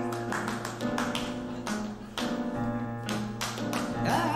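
Syncopated flamenco-style hand clapping over held low pitched notes in a live flamenco-jazz band.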